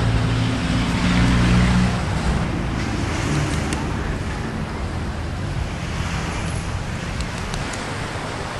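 Seaside ambience: steady wind and wave noise with a low engine hum under it, the hum loudest in the first two seconds.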